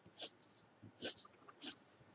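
A few short, faint scratching strokes of a coloured pencil on paper as darker shading is laid in.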